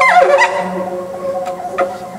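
Conch shell trumpet blown as a musical instrument: a note slides sharply down in pitch at the start, then settles into held tones over a low drone, fading toward the end.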